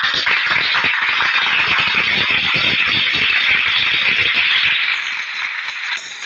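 Studio audience applauding: dense, steady clapping that eases off about five seconds in.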